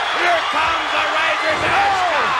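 Arena crowd yelling and cheering, with a heavy thud about one and a half seconds in as a wrestler is slammed onto the ring canvas by a Razor's Edge powerbomb.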